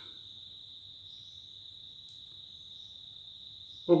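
A steady, high-pitched insect drone in the background, holding one pitch without a break.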